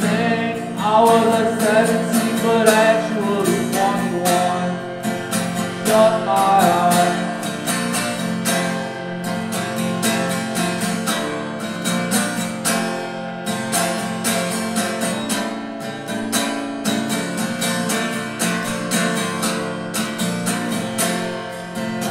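Steel-string acoustic guitar strummed in a steady rhythm, a passage of a solo acoustic song with no sung words.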